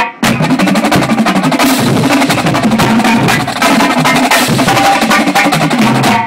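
Marching drumline, snare drums over bass drums, playing a fast, dense cadence in unison, with a short break just after the start.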